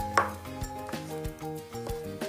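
A knife slicing a kiwi on a cutting board: a few separate knocks as the blade meets the board, the first just after the start. Light background music with held notes plays under it.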